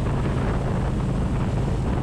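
Harley-Davidson Road Glide's Milwaukee-Eight 107 V-twin running steadily at cruising speed, a constant low hum, with wind rushing over the microphone.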